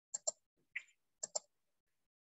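Computer mouse clicks: two quick double-clicks, with a single softer click between them.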